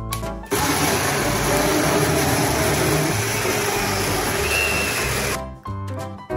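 Personal blender running, blending a milkshake in its tall jug: a loud, even whir that starts about half a second in and cuts off abruptly about five seconds later.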